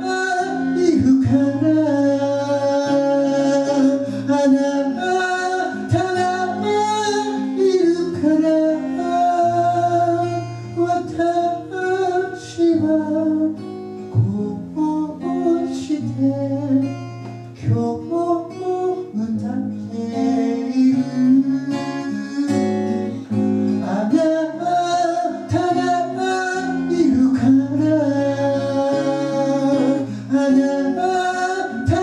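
A solo voice singing a Japanese song to its own strummed acoustic guitar accompaniment, performed live.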